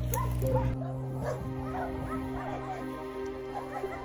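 Many kennelled shelter dogs barking and yipping at once, many short overlapping barks starting about a second in, over background music with steady held notes.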